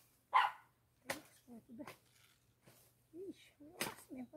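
A dog barks once, sharply, about half a second in; this is the loudest sound. After it come faint voices and two sharp clicks.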